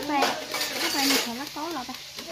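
A knife shaving strips off a bamboo shoot over a metal bowl: repeated rasping scrapes with small clinks, strongest in the first second and again about a second in, with women's voices talking over it.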